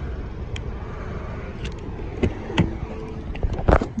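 A car's driver's door being opened: a few light clicks, then a louder latch clunk near the end, over a steady low outdoor rumble.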